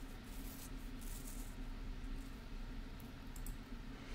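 Quiet room tone: a steady low electrical hum with a couple of faint soft rustles about half a second and a second in.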